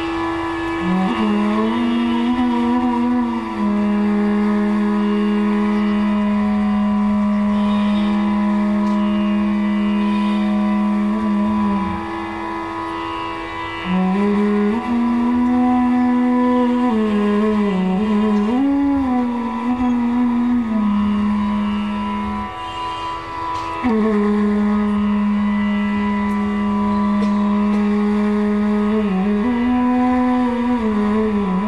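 Bansuri (bamboo flute) playing slow phrases of Raag Yaman Kalyan: long held low notes that glide between pitches, over a steady tanpura drone. The flute pauses briefly about 12 and 22 seconds in, then starts a new phrase.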